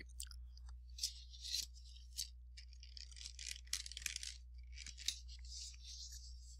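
A man chewing a piece of pecan: faint, irregular crisp crunching.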